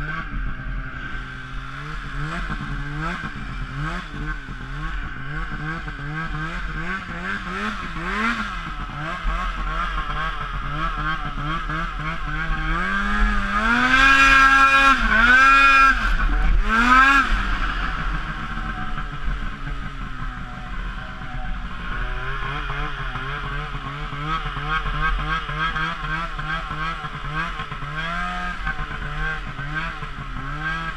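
Two-stroke 800 snowmobile engine running under the rider, its pitch rising and falling continually with the throttle, loudest in a burst of high revs about halfway through.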